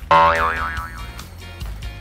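Cartoon-style 'boing' sound effect: a sudden springy tone whose pitch wobbles up and down, fading out over about a second, over background music.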